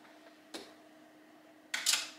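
Clothes hangers on a metal clothing rack: one click about half a second in, then a short, louder clatter near the end as hangers knock and slide along the rail, over a faint steady hum.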